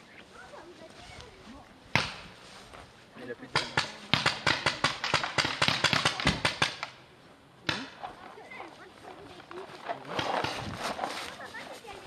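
Paintball marker firing a rapid string of shots, roughly seven a second for about three seconds. A single sharp shot comes shortly before the string and another shortly after it.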